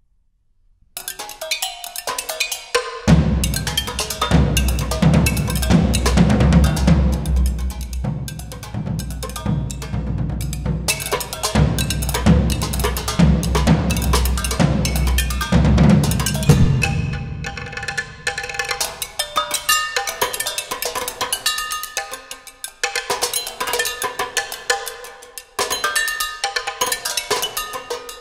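A percussion duo playing fast, dense stick strokes on a mixed setup of drums, small cymbals, glass bottles and a wooden log. A deep low rumble runs under the strokes from about three seconds in until a little past halfway. After that, ringing pitched tones stand out among the strokes.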